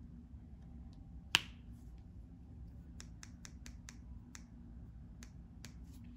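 Small sharp clicks of a diamond painting drill pen tapping resin drills onto the canvas: one louder click a little over a second in, then a run of about eight lighter clicks in the second half.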